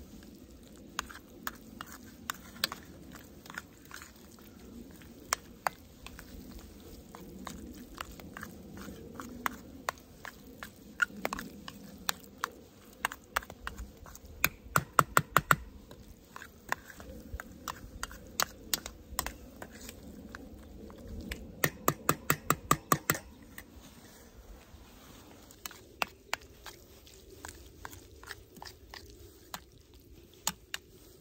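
Metal spoon stirring thick chili mac with melting cheese in a metal skillet, clinking and scraping against the pan with a wet squelch. Scattered clicks run throughout, with two quick runs of rapid taps, one around the middle and one a few seconds later.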